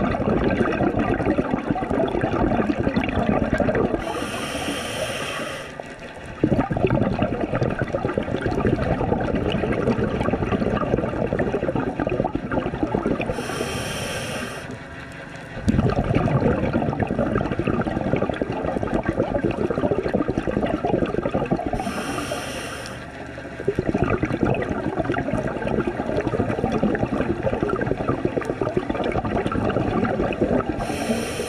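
Scuba diver breathing underwater through an open-circuit regulator, three full breaths about nine seconds apart. Each starts with a short hiss as air is drawn through the second stage, followed by a long rush of exhaled bubbles.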